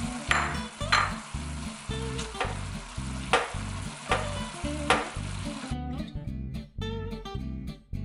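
Ground beef sizzling in a frying pan of hot olive oil and tomato sauce, with a spatula scraping and breaking up the meat in strokes about once a second. The sizzling cuts off suddenly about three-quarters of the way through, leaving only background music.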